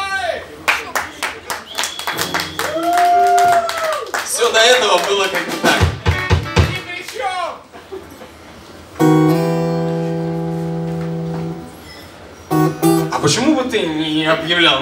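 An acoustic guitar chord is strummed about nine seconds in and rings out for about two and a half seconds. Another strum comes near the end, with talk around it.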